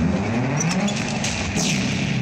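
Film soundtrack sound effect: a loud, dense rumble whose pitch dips and then rises, with a falling whoosh near the end.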